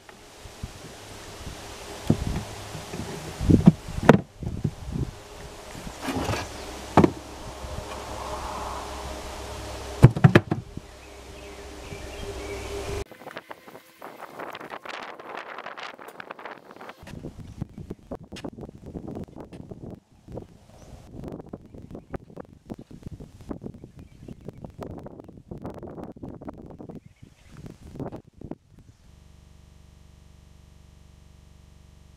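Old wooden beehive frames knocking and clunking against each other and a wooden swarm trap box as they are loaded in, with several sharp knocks. After that comes a long stretch of rustling and many small clicks and taps from handling.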